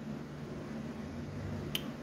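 Quiet steady low room hum, with one short sharp click near the end.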